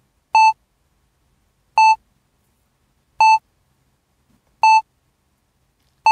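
A short electronic beep, one high tone repeated four times at an even pace about one and a half seconds apart, with silence between.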